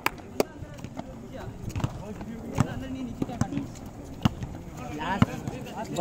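A basketball bouncing and players' shoes hitting an outdoor concrete court. Scattered sharp knocks come about a second apart, with players calling out faintly.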